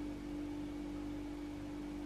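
Steady low hum with faint hiss: the room tone of a small room, with no distinct events.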